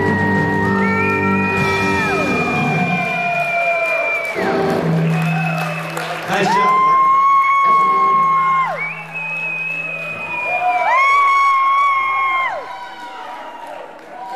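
Live rock band playing, with held bass notes, long high notes that slide down at their ends, and drum and cymbal hits. The crowd cheers and whoops over it. The music thins out near the end, as the song winds down.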